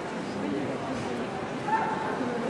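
Crowd chatter in a large hall, with one short dog bark near the end.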